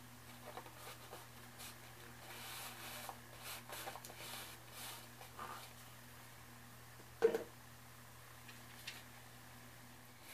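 Faint, scattered rustling and rubbing of paper as glued paper pieces are pressed and smoothed down by hand onto a burlap canvas, with one sharp tap a little after seven seconds in. A steady low hum runs underneath.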